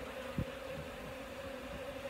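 Honeybees buzzing in flight around the microphone, a steady hum, with one short tick about half a second in.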